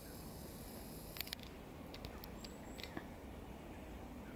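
Starlings calling from a large murmuration overhead: scattered short high squeaks and clicks, a couple of brief high whistled glides about two and a half seconds in, faint over a steady low rumble.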